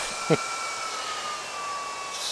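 Small San Ace 40 mm cooling fans in an e-bike hub motor whining over a steady airy hiss; the whine's pitch slowly sinks and its higher tone fades out partway through, as the fans slow.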